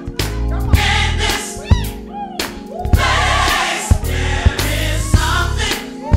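Live gospel choir singing with a full band, a strong low bass part and repeated sharp percussive hits.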